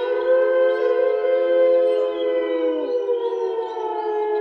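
A sustained drone of several steady tones sounding together, like a held chord, that sinks slowly in pitch and has a siren-like quality.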